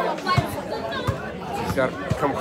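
Speech: voices talking over one another.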